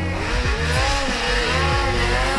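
Polaris Pro RMK snowmobile's two-stroke engine revving, its pitch rising and falling repeatedly as the throttle is worked.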